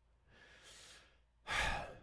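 A man breathing close into a microphone: a faint breath about half a second in, then a louder one near the end.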